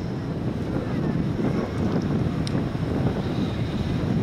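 Steady wind rumbling on the microphone, a low, even noise with no clear sound event in it.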